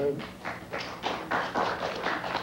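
Studio audience applauding: a smattering of applause, a dense patter of many hands clapping that builds about half a second in.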